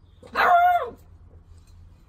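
Beagle puppy giving a single short, loud bark, its pitch dropping at the end.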